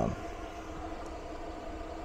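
A power inverter's cooling fan running steadily under heavy load, a continuous hum with several steady tones.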